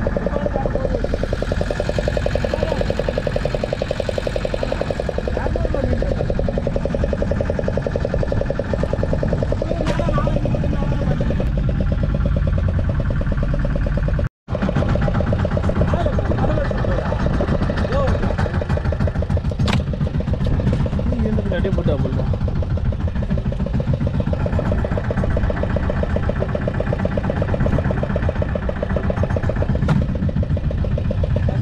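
A fishing boat's engine running steadily, its rapid firing pulses even throughout, with men's voices talking over it now and then. The sound cuts out for a moment about fourteen seconds in.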